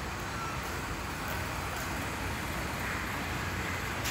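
Steady traffic rumble with a faint hiss, with no single vehicle standing out.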